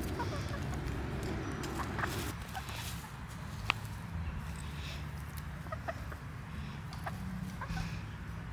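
Hens clucking as they forage in freshly dug soil, with one sharp click a little under four seconds in.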